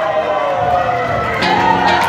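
A crowd cheering and shouting, their voices sliding down in pitch. Music with a drum beat comes in about one and a half seconds in.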